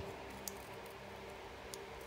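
Quiet handling of a small piece of freshly trimmed patterned paper, with two light clicks, one about half a second in and one near the end, over a faint steady hum.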